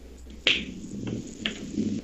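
Two sharp clicks over a low background murmur: a loud one about half a second in and a fainter one about a second later.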